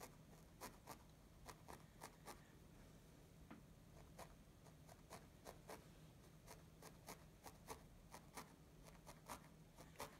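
A felting needle stabbing repeatedly through loose wool fibres into a felted background, heard as faint, short pricks about two or three a second, over a low steady hum.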